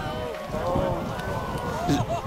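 Several people's voices talking and calling out, overlapping, with no clear words.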